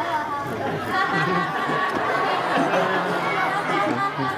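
Many voices talking over each other at a steady level: a theater audience chattering.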